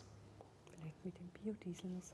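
A faint, soft voice murmuring a few short syllables under the breath.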